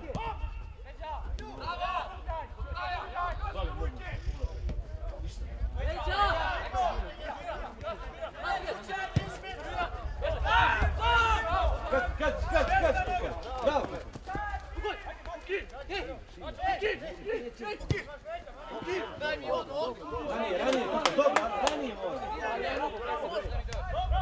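Voices shouting and calling across a football pitch during play, in bursts, over a steady low rumble, with a few sharp knocks.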